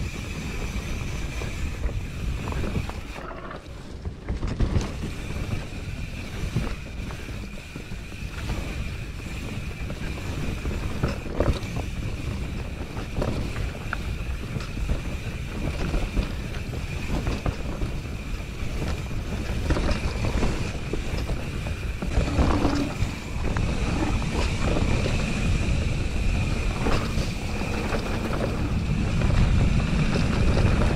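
Mountain bike running down a dirt forest trail, recorded from the handlebars: the rumble of the tyres on the ground and the rattle of the bike, with occasional knocks over bumps, wind noise on the microphone, and a steady high whine underneath.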